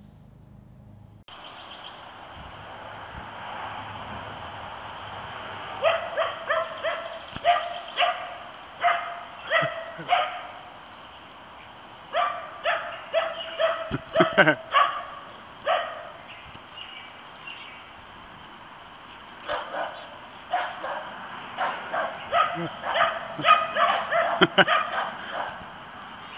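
Small dogs barking in three runs of rapid, high-pitched barks, several a second, over a steady background hiss.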